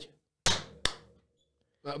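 Two sharp hand claps about half a second apart, made on a spoken count-in as a sync clap at the start of a recording.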